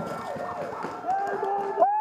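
Paintball gunfight: repeated sharp shots from paintball markers, with many whistling tones curving up and down in pitch as balls fly past. Near the end one loud whistle sweeps steeply down in pitch.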